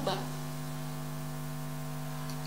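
Steady electrical mains hum, a low buzz with several fixed tones.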